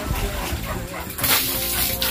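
Piglets feeding at the trough, with pig noises and a harsh, noisy burst in the second half, over background music.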